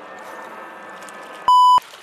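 A short, loud, pure bleep tone about one and a half seconds in, lasting roughly a third of a second, with the other sound cut out around it: an editor's censor bleep. Before it there is a low steady background hiss.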